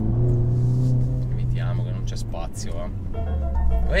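Mercedes-AMG A45 S's turbocharged four-cylinder heard from inside the cabin, holding a steady note and then dropping to a lower note about three seconds in as the car slows, with music playing.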